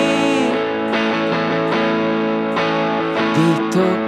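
Live band playing an instrumental stretch of a song with no vocals: electric and acoustic guitars strummed and picked over the band, with a few bent guitar notes near the end.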